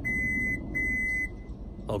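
Subaru Crosstrek's answer-back beeper sounding two steady high beeps, each about half a second long, as the rear gate unlocks from the remote key fob. This is the sign that the transplanted fob works.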